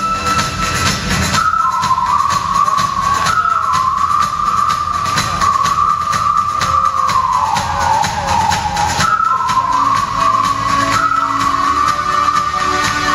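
Live synth-pop band playing a song's intro: a sustained synthesizer lead holding high notes that step between two pitches, sagging briefly about two-thirds of the way in, over a steady drum beat.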